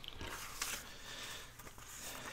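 Soft rustling of loose old book pages being picked up and handled.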